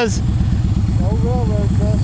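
Yamaha V Star 1300's V-twin engine running steadily at road speed, a dense low rumble that carries on unbroken.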